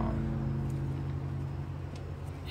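A steady low hum of a running engine, with no knocks or clicks.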